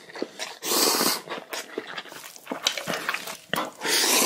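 Spicy instant noodles being slurped: a long loud slurp about half a second in and another near the end, with chewing and small wet mouth clicks between.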